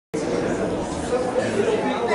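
Indistinct voices talking, a steady murmur of speech in a large hall.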